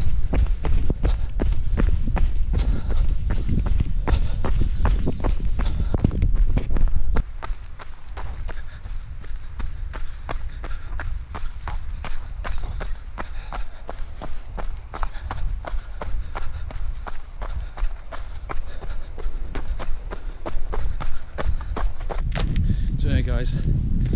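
A runner's footsteps on a dirt forest trail, a quick, even beat of strides, over a low rumble of noise. The strides are louder for the first seven seconds or so.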